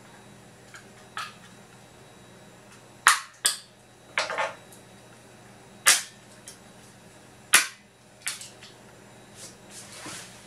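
Sharp plastic snaps and cracks as the snap-fit case of a DVD remote control is pried apart and its clips let go: loud cracks about three seconds in, twice close together, then near six and seven and a half seconds, with smaller clicks between.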